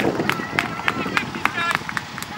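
High-pitched shouts and calls from young soccer players and people around the field, with sharp clicks scattered through.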